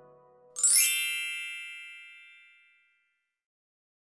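A single bright chime sound effect, struck about half a second in, that rings with a shimmering, many-toned tail and fades away over about two seconds. It marks a claw-machine prize win.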